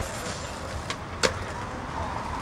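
Street traffic noise, with a faint click just under a second in and a sharp, louder click a little past halfway.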